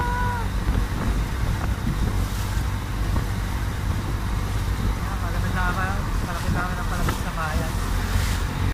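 Motor outrigger boat running steadily under way, its engine rumbling under the rush of water and wind along the hull.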